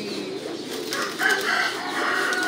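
Many caged pigeons cooing together in a low, wavering murmur. About a second in, a longer, higher-pitched bird call sets in over it.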